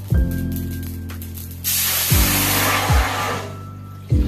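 Water poured into a hot stainless steel pan of roasted cumin seeds: a sudden loud hiss starts a little before halfway and fades out before the end. Background music with a steady beat plays throughout.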